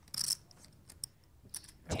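Clay poker chips clicking together as a stack is picked up and pushed forward to call a bet: a short rattle just after the start, then a couple of faint single clicks.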